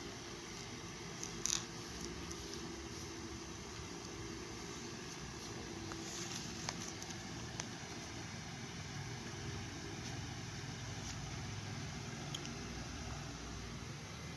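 Quiet steady room noise with a few faint clicks and rustles: a homemade plastic-bottle toy dagger and the phone filming it being handled.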